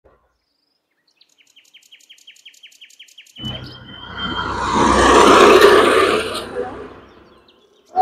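A rapid run of high chirps, about six or seven a second and growing louder, then a loud rushing noise that starts suddenly, swells and fades away over about four seconds.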